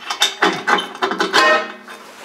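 Steel bushing being fitted by hand into a steel collar on the blade's A-frame: several sharp metal clinks, each with a ringing tone that dies away.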